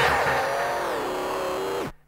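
The tail of the rock soundtrack: a held chord that fades and slides down in pitch, then cuts off abruptly just before the end.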